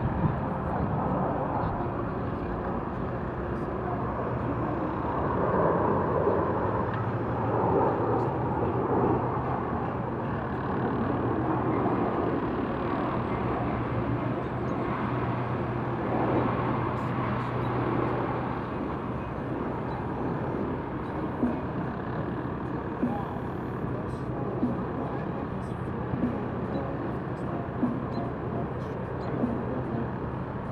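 Outdoor city ambience: steady traffic noise with faint, indistinct voices. A low, steady hum runs through the middle, and a few light ticks come near the end.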